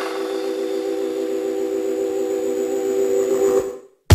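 Electronic dance music in a breakdown: a held synth chord of several steady tones with no beat, fading away to a brief silence just before the end.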